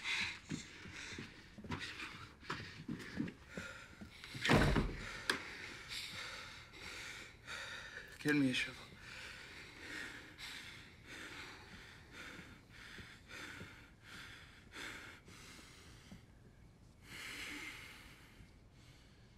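A person breathing hard in short, quick gasps, with one heavy deep thump about four and a half seconds in and a brief voice sliding down in pitch a few seconds later.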